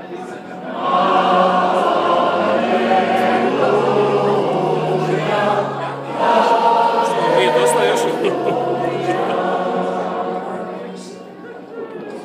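Church congregation singing a hymn together in long held phrases. The singing swells about a second in, breaks briefly midway, and fades toward the end.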